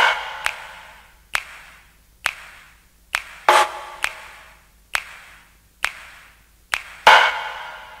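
Early-1990s techno in a sparse passage: single electronic percussion hits with long echoing tails, about one a second. A few louder hits carry a synth chord, with the drum-machine beat dropped out.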